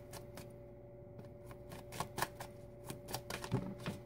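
A deck of tarot cards being shuffled by hand, overhand: irregular soft clicks and snaps of the cards against each other, a few a second, over a faint steady hum.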